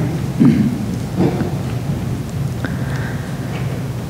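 Steady low rumble and hiss of a large room's background noise, with a few faint, brief rustles and murmurs.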